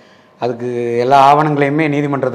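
A man's voice speaking after a brief pause, opening on a long, steady-pitched drawn-out sound before going on in ordinary speech.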